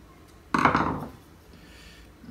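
Steel screwdriver with a plastic handle set down on a wooden workbench: one sharp clatter about half a second in that dies away within half a second.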